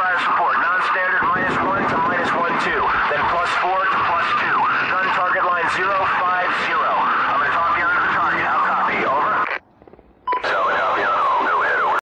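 Radio voice chatter, tinny and hard to make out. It cuts out briefly near the end, then comes back with a short beep.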